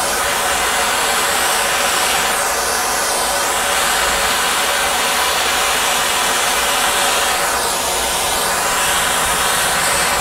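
Gas torch flame hissing steadily while it reheats lead body solder that has cooled on a steel fender, its tone shifting twice.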